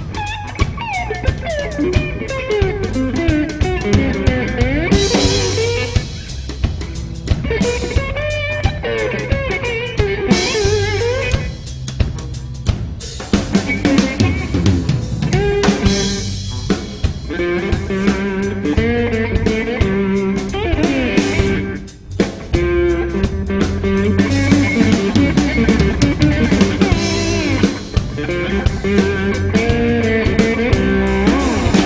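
A live instrumental jazz-rock trio: electric guitar soloing with bent, wavering notes over electric bass and a drum kit.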